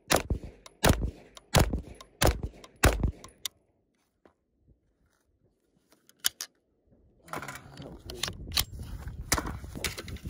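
Grand Power Stribog SP9A3S 9mm pistol-calibre carbine firing four shots about 0.7 s apart, then stopping. The bolt has failed to fully seat and rides on top of the last round. Metallic clicks and rustling follow as the jammed gun is handled.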